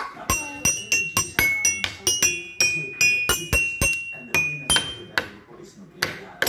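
Toy xylophone with coloured metal bars struck with a mallet in an irregular run of about three strikes a second, each note ringing briefly at a different pitch, as a child plays at random.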